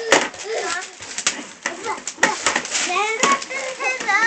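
Wrapping paper crinkling and tearing as a child unwraps a gift, under short bursts of talk.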